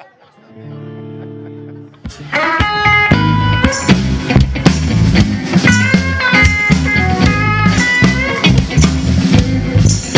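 Live blues band opening an instrumental intro: a steady held keyboard chord, then about two seconds in electric guitars, bass, drums and keyboard all come in together. A lead electric guitar plays bent blues notes over the shuffle.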